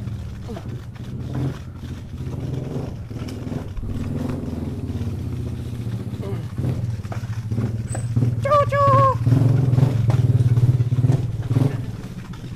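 Small motorcycle engine running steadily, getting louder in the last few seconds.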